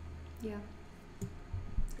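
A few soft clicks from hands at a laptop in the second half, after a short spoken 'yeah', over a low steady hum.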